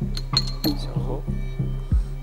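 Metal bottle caps clinking against a glass bowl as they are flicked across a table, a few sharp clinks with a short ringing tail, over background music with a steady beat.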